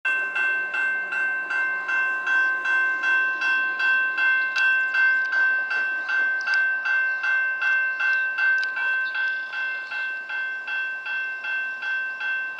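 Railway grade crossing bell ringing steadily at about three strikes a second, each strike leaving a ringing tone, as the crossing warning is active.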